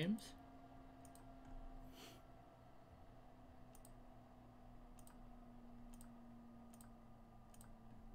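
Faint computer mouse clicks, scattered single clicks spread through, over a low steady electrical hum.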